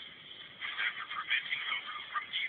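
Thin, tinny soundtrack of a streamed cartoon playing through an iPod touch's small built-in speaker, starting about half a second in, with the sound fluctuating like voices and effects.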